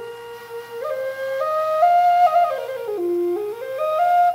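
Native American flute of river cane played through its scale in short held notes, stepping up, then down to its lowest note about three seconds in, then back up: a run through the notes to check they are in tune.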